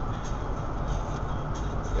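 Steady road and engine rumble heard from inside a moving van's cabin.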